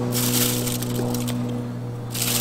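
Hands rubbing a dry salt-and-pepper seasoning over the skin of a raw turkey, a scratchy rubbing for just over a second that then stops, over a steady low hum.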